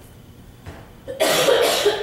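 A woman coughing, one loud harsh cough a little over a second in.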